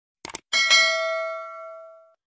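A quick double mouse click, then a bright bell ding that rings out and fades over about a second and a half: the click-and-bell sound effect of a subscribe-button animation.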